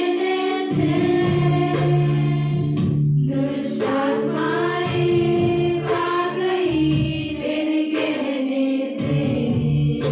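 A group of women singing a Christian worship song together, over sustained low accompanying tones and a steady beat of about two strokes a second.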